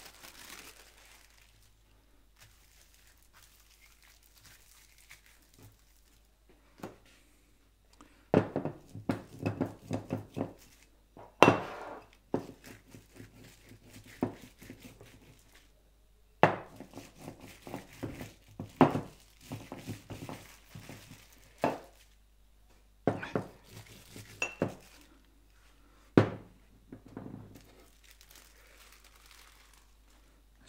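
Clear plastic film crinkling as it is handled, then, from about eight seconds in, a series of sharp taps and thuds as the paint-loaded plastic is pressed and dabbed onto paper lying on a wooden tabletop.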